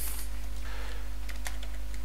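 Typing on a computer keyboard: a few scattered key presses over a steady low electrical hum.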